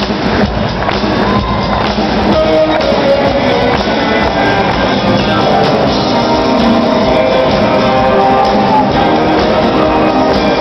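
Live rock band playing loud, steady music with electric guitars, keyboards and drums, recorded from within the audience.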